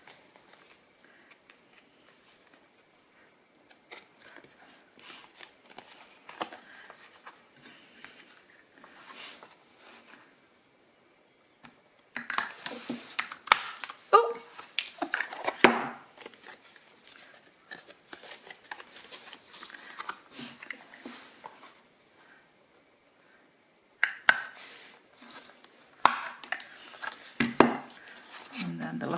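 Rustling of card envelopes being handled, then two clusters of sharp clicks and clunks, midway and near the end, as a handheld paper punch cuts half-circle notches into the cardstock envelope pockets.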